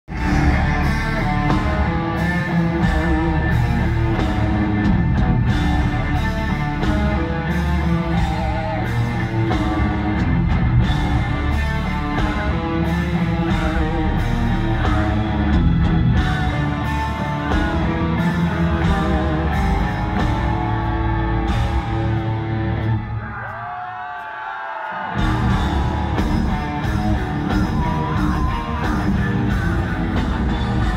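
Live heavy rock band playing at full volume: electric guitars, bass, drums and keyboards over a steady beat. A little over two-thirds through, the drums and bass drop out for about two seconds, leaving a thin gliding tone, then the full band comes back in.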